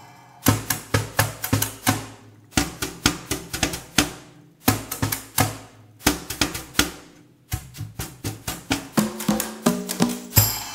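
Congas and other hand percussion played by two players: phrases of fast, sharp strokes broken by short pauses about every two seconds. Near the end the pitched open conga tones come forward.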